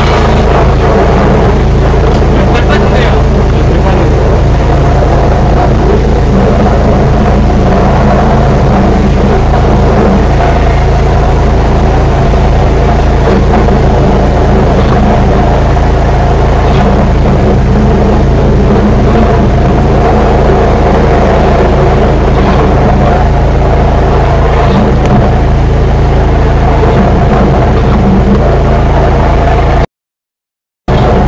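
Drain-cleaning machine running steadily while its line is fed down a clogged drain pipe: a continuous, loud, even motor sound that does not change.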